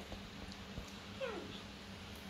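A baby macaque gives one short squeal that falls steeply in pitch, a little past halfway through.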